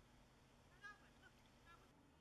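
Faint goose honking: three short calls, the first and loudest about a second in, the others just after and near the end, over quiet outdoor background.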